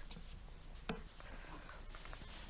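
Faint room hiss with one soft knock about a second in, a shoe landing on a low wooden step bench as a person steps off it.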